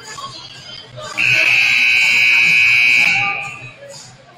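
Gym scoreboard horn sounding one long, steady, high blast of about two seconds, signalling the end of the break before the fourth quarter, over crowd chatter.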